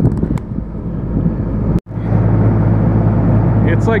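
Wind rushing across the microphone with a few sharp clicks. About two seconds in, the sound cuts out abruptly and is replaced by the steady low hum of a logging machine's diesel engine running, heard from beside the machine.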